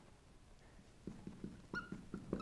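Marker pen writing on a whiteboard, faint: near silence at first, then from about a second in light pen strokes and a short high squeak of the felt tip on the board.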